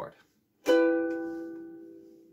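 A single strum of an E minor chord on a ukulele, a little over half a second in, ringing and slowly fading.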